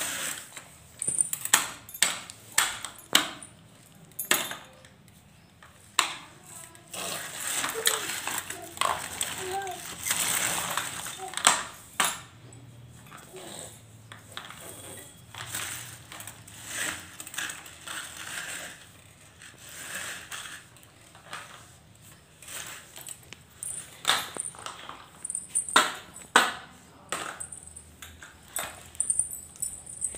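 Baby walker rolling on a hard floor: its small plastic wheels and metal frame clatter, with many sharp clicks and knocks as it moves and bumps.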